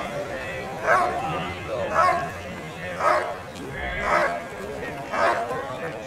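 German Shepherd barking steadily at a helper during a bark-and-hold guard at the blind, about one bark a second.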